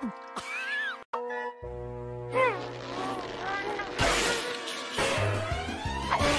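Cartoon soundtrack: orchestral music with a cartoon cat's meowing voice gliding up and down over it. The sound cuts out for an instant about a second in, and there is a short burst of noise about four seconds in.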